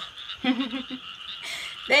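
A chorus of frogs croaking steadily, with a short laugh about half a second in.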